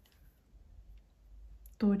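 Near silence: faint room tone with a low hum, and a woman's voice beginning near the end.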